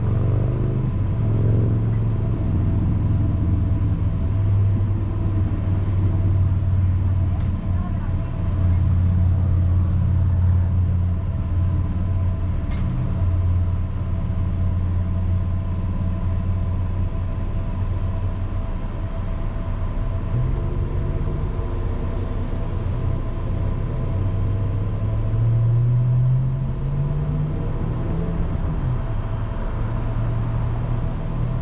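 Car engine idling while stopped, heard from inside the car, with a steady whine over the low engine hum. The engine note shifts up about two-thirds of the way through and rises briefly near the end.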